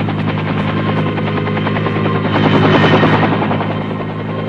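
Bell UH-1 Huey helicopters flying low overhead, their rotor blades beating in a steady rapid chop over the engine's whine. The sound swells about two and a half seconds in as one passes close, then eases off.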